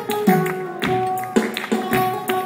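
Live flamenco: acoustic guitar playing held notes while a dancer's shoes strike the stage in sharp beats about twice a second.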